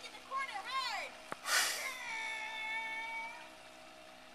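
High-pitched voice calling out in a sing-song way, the pitch rising and falling over the first second. A short breathy hiss follows, then one held call lasting about a second and a half.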